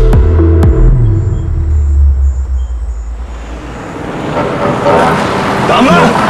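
Film soundtrack: dramatic score over a low, steady vehicle engine rumble. The rumble fades away about halfway through, and a wavering, rising layer of music builds near the end.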